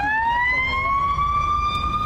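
Emergency vehicle siren wailing as it passes, its pitch climbing through the first second, then rising more slowly and holding high.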